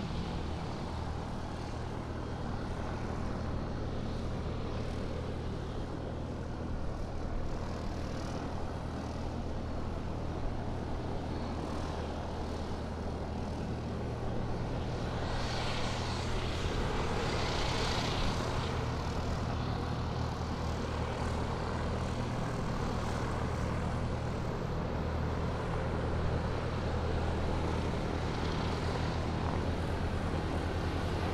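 Steady low engine drone from aircraft or airport ground machinery around a parked airliner, with a brief hissing swell about halfway through.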